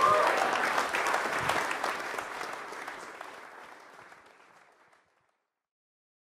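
Audience applauding, the clapping steadily fading away over about four and a half seconds until it is gone.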